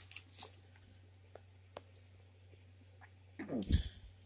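A folded paper leaflet being opened, with a few faint crinkles and clicks. About three and a half seconds in comes a brief, louder vocal sound that slides down in pitch.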